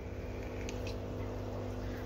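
Steady hum of an aquarium air pump with the bubbling of air-driven sponge filters, and two faint clicks a little under a second in.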